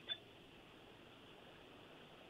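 Near silence: a pause between spoken sentences, with only a faint steady hiss.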